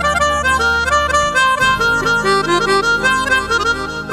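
Roland Juno-G synthesizer keyboard playing a quick lead melody on a reed-like tone over a sustained backing part, whose bass shifts about one and a half seconds in.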